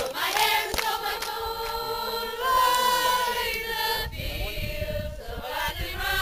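A mixed group of young men and women singing together unaccompanied, holding long notes. A few hand claps sound near the start.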